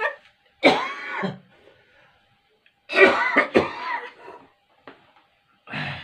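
A man coughing with his mouth stuffed full of marshmallows: a coughing burst about a second in, a longer one about three seconds in, and a short one near the end.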